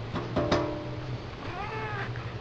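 Domestic cat giving one short meow near the end that rises and then falls in pitch. About half a second in there is a click with a brief steady tone.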